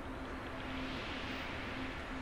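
Steady hiss of recording noise with a faint low hum, and no distinct sound event.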